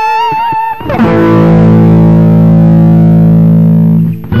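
Electric guitar through distortion playing a blues lick in A: a few quick single notes with vibrato, then about a second in a low chord is struck and left to ring out.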